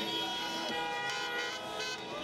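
Several car horns sounding together in long held tones at different pitches, with voices underneath.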